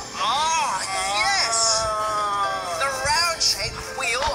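A voice making wordless, drawn-out exclamations whose pitch arches up and down, with one long held note in the middle, over background music.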